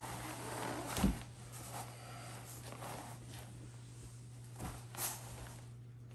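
A quilt rustling as a person settles under it on a camp cot, with a soft thump about a second in and another near the end, over a low steady hum.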